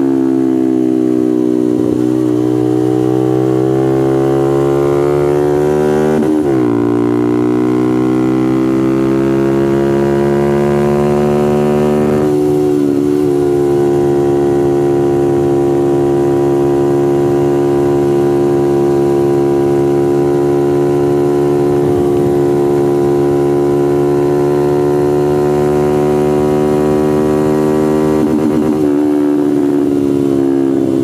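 Honda Grom's 125 cc single-cylinder four-stroke engine at high revs on track. The pitch climbs, drops sharply about six seconds in as it shifts up a gear, climbs again, then holds high and steady for a long stretch at near-constant throttle, easing off near the end.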